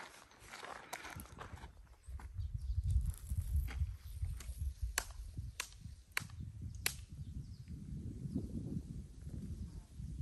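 Footsteps on a gravel trail under a low rumble of wind or handling on the microphone. Midway come four sharp clicks, evenly spaced a little over half a second apart.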